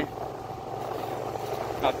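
A two-wheeler's engine running steadily at cruising speed, a low even hum heard from the pillion seat while riding.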